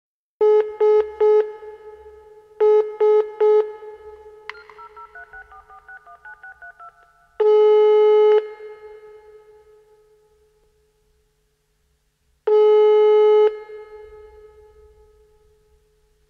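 Telephone line tones opening an electronic track. Two quick groups of three short beeps come first, then a fainter run of stepping touch-tone dialing notes. After that comes a ringing tone: one-second beeps about five seconds apart, each trailing off in a long echo.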